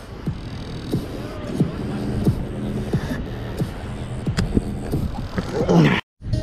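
A steady low hum with scattered light taps, then a man's shout near the end, like the calls of "Go" that come every few seconds.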